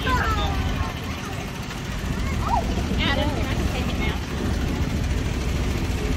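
Steady low engine rumble of the vehicle hauling a covered hay wagon, with brief voices and short calls from the riders over it, the loudest at the start and around the middle.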